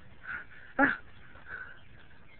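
A short, sharp yelp about a second in, with fainter, shorter calls just before and after it.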